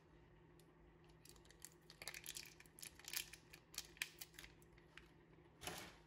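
Faint crinkling and clicking of a plastic yogurt pouch being handled and opened, then a short squelch about a second before the end as yogurt is squeezed out into a glass bowl.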